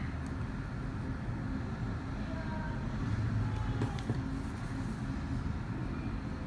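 A steady low background rumble, with a few faint ticks from an embroidery needle and cotton thread being drawn through fabric stretched in a hoop during satin stitch.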